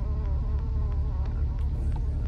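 Steady low engine and road rumble inside the cab of a 2000 GMC Sierra pickup rolling slowly along a sandy dirt trail, with a wavering buzz over it.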